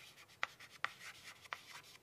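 Chalk writing on a blackboard: a few short, sharp chalk taps and strokes with faint scratching between them.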